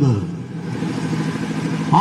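A low engine running steadily with an even hum, as a man's word trails off at the start and his voice comes back in near the end.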